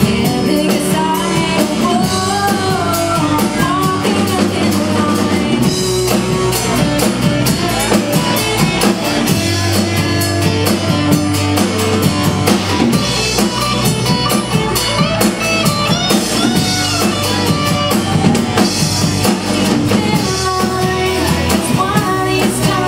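A live country band plays with a woman singing lead, backed by electric and acoustic guitars and a drum kit.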